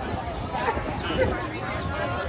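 Background voices of people talking amid a steady outdoor crowd din.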